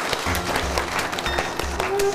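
Studio audience applauding as closing theme music comes in, a pulsing bass beat under the clapping. A held musical note enters near the end.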